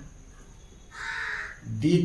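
A crow cawing once, a single harsh call of about half a second, about a second in.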